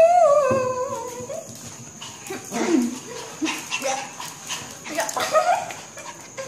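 Small dog whining while it plays, one long note rising then falling near the start, followed by several short yips and whimpers.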